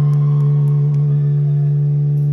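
A single low note held steady by an amplified instrument through a concert PA, one unwavering pitch with several overtones above it.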